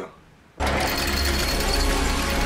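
Intro sound effect and electronic music that start abruptly about half a second in, after a brief near-silence: a fast mechanical clatter over a heavy bass.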